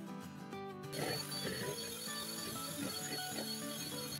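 Electric hand mixer running in cake batter, starting about a second in with a steady high-pitched whine, over quiet background guitar music.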